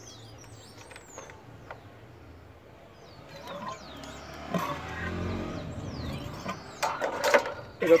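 A vehicle passes by, swelling and fading through the middle, with birds chirping. Near the end come a few sharp knocks as the motorcycle fork tube and spring are handled over the plastic oil drain jug.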